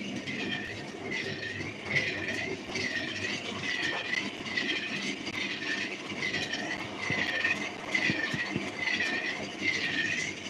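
A rhythmic mechanical squeak, each one dipping and rising in pitch, repeating about three times every two seconds over a steady rumbling noise.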